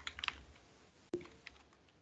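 Faint computer keyboard keystrokes: a quick run of taps at the start, then two single key presses about a second in and a little later.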